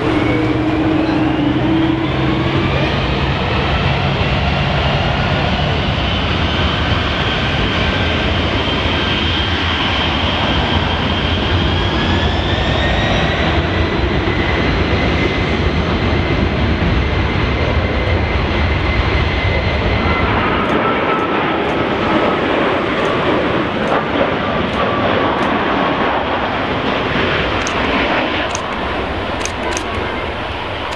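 Twin-engine Boeing 767 jet airliner at high power on its takeoff roll: loud, steady jet-engine noise with thin engine whines rising in pitch over the first dozen seconds as the engines spool up. About two-thirds of the way in, the deep rumble drops away and a higher, lighter jet noise carries on.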